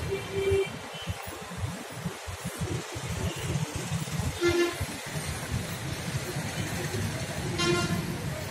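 Street traffic rumbling, with a vehicle horn sounding briefly twice: once about halfway through and again near the end.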